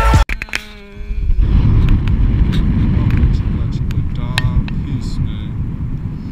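Wind buffeting an action camera's microphone, a loud low rumble, starting about a second and a half in just after background music cuts off. Short bits of a voice come through it near the start and again past the middle.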